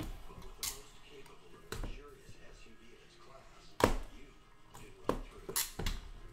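A cardboard trading-card box being handled on a wooden case, with several sharp knocks and scrapes. The loudest knock comes about four seconds in.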